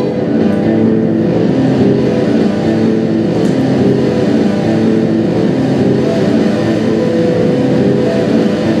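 Live experimental noise music: a loud, dense, unbroken drone of layered low tones with a rough, engine-like edge and no beat.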